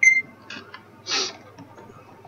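A short electronic beep from a smartphone, then a couple of light clicks and a brief rustle of handling.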